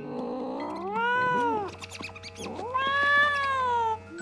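Cat yowling twice in two long, drawn-out calls, each rising and then falling in pitch, with the second the louder and longer.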